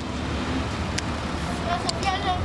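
Steady road traffic noise, with a sharp click about halfway through and another near the end as a telescoping selfie stick is handled.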